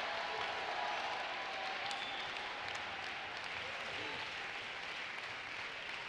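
A church congregation applauding steadily, the clapping slowly dying away.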